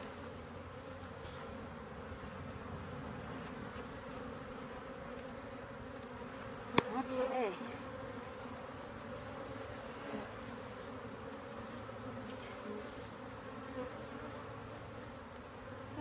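Honey bees buzzing around an open hive, a steady hum. A single sharp click about seven seconds in.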